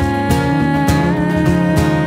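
Acoustic band playing: acoustic guitar strumming over electric bass, with cajon hits keeping the beat about twice a second and a woman's held, wavering sung note.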